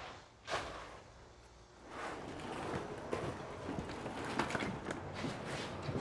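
Footsteps, then from about two seconds in a steady scraping rustle with light knocks from demolition work on old plaster and lath.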